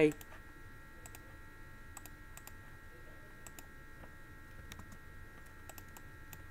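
Computer keyboard keystrokes, faint single clicks and short pairs at irregular intervals, over a steady faint electrical whine.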